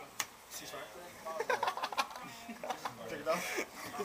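Indistinct voices of people talking in a room, with two brief sharp clicks, one near the start and one about halfway.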